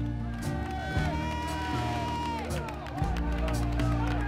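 Background music with a steady bass line, with people's voices shouting over it.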